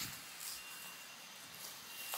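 Faint outdoor background noise with a thin, steady high tone and no distinct event.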